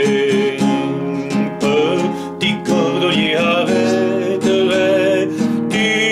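A classical guitar strummed in a steady rhythm, with a wavering melody line carried over the chords.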